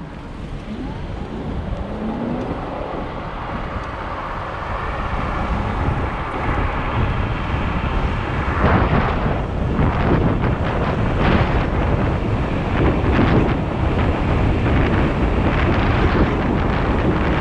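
Wind buffeting the microphone of a moving electric scooter, growing louder as the scooter picks up speed and turning gusty about halfway through.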